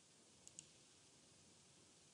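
A computer mouse double-clicked: two quick sharp clicks about half a second in, over near-silent room hiss.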